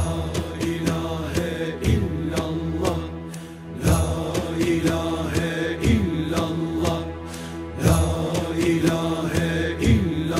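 Instrumental Turkish Sufi music, a kaside/zikir piece in makam Uşak. A winding melody runs over a steady held drone, with a strong accented beat about every two seconds.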